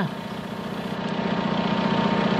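An engine idling steadily: a low hum with a fast, even pulse, growing a little louder.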